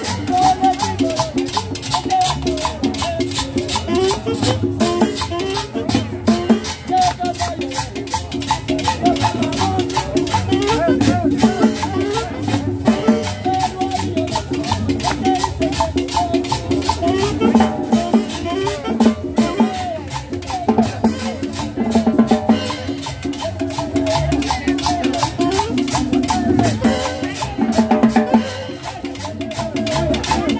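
A live band plays fast salsa-style music, with conga, timbales and cymbals driving a dense, busy rhythm under a pitched melody.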